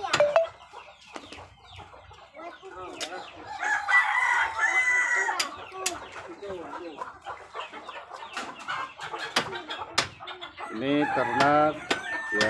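A rooster crows once about four seconds in, the loudest sound, amid the clucking of a mixed flock of chickens and Muscovy ducks; short taps and clicks come and go throughout.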